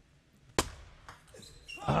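A single sharp tap of a table tennis ball, a little over half a second in, in a mostly quiet hall.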